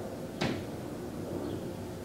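A single short, sharp knock about half a second in, over steady low background noise.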